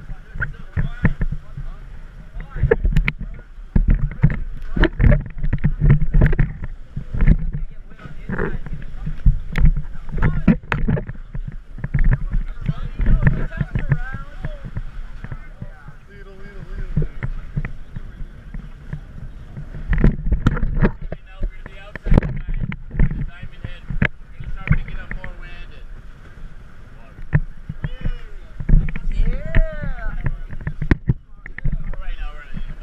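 Water splashing and rushing past the hulls of a sailing catamaran under way, in irregular bursts over a low rumble.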